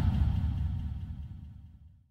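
The closing tail of an electronic trance track: a low rumbling bass sound fading steadily away.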